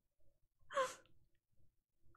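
A woman's single short, breathy sigh of amusement, about a second in.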